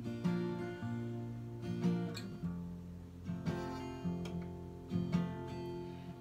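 Acoustic guitar alternating B-flat and barred F chords, changing chord about halfway through. Each chord starts with a single picked bass string, then a light up-down-up strum.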